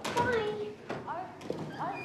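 A person speaking briefly, followed by two short, squeaky rising sounds about a second apart.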